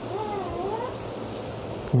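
A single short, wavering high-pitched call lasting under a second, a little after the start, over a steady background hiss and low hum.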